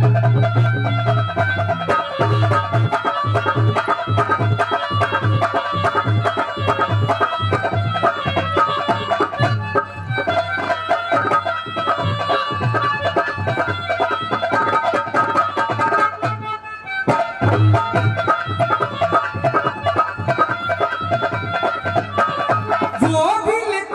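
Instrumental interlude of a Haryanvi ragni: harmonium melody over a steady rhythm of hand-drum strokes. The drums drop out briefly about three-quarters of the way through, then come back in.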